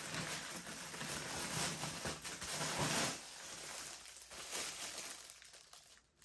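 Plastic packaging crinkling and rustling as a plastic-wrapped microwave splatter cover is handled, loudest two to three seconds in and quieter after.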